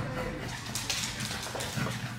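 A pug whimpering softly.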